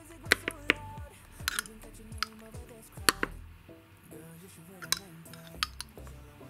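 Metal teaspoon clinking and tapping against plastic feeding bowls and the baby-food jar while puree is scooped and spooned out: a scattered series of sharp clicks, a dozen or so, some in quick pairs.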